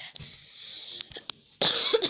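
A person coughs once, loudly, near the end. Before it there is a faint hiss with a few small clicks.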